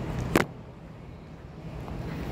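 A single sharp knock about a third of a second in, over a low, steady background rumble.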